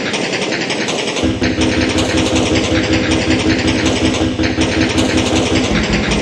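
A machine motor running steadily with a dense buzzing noise; a steady hum and a low rhythmic throb join in about a second in.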